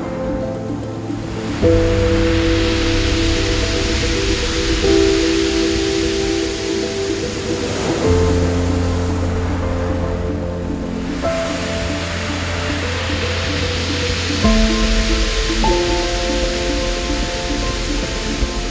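Background music of sustained chords over a deep bass, changing about every three seconds, with a rushing wash of noise like surf that swells and fades twice.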